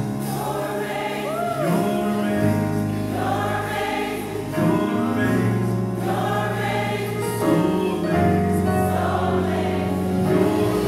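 Gospel choir singing a praise and worship song in long held phrases.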